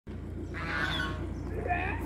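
Ducks calling, two calls about half a second in and near the end, over a steady low rumble.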